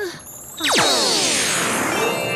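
A magic spell sound effect: a bright, shimmering cascade of tones that sweeps down in pitch, starting suddenly about a third of the way in and leaving steady chiming tones ringing on.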